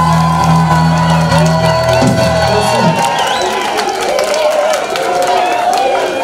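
A live band's held chord rings on and cuts off about halfway in, then the audience cheers and shouts.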